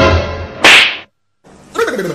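A single sharp whip-crack sound effect, very loud and about a third of a second long, cut in over fading background music. It stops dead into a moment of total silence before outdoor sound comes back.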